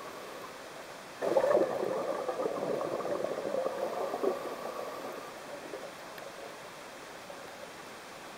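Scuba exhalation bubbles from a diver's regulator, heard underwater. A burst of bubbling starts about a second in and tails off over the next few seconds, leaving a low steady hiss.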